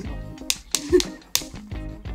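Background music with three sharp clicks in the first second and a half.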